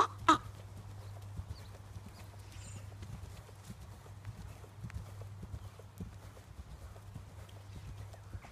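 Yearling Thoroughbred filly's hooves striking the sand of a riding arena at a canter, a run of soft, uneven thuds, over a low steady hum.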